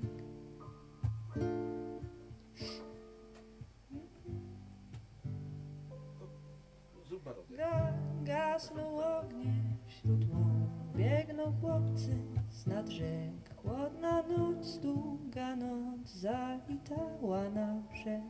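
Live acoustic music: an upright piano playing chords for a song, with a voice singing over it in the second half.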